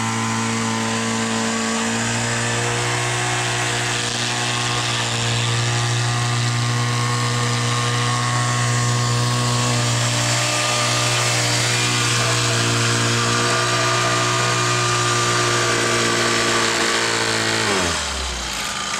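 Small engine of a walk-behind power screed running steadily at constant speed as the screed is drawn across wet concrete. It drops in pitch near the end.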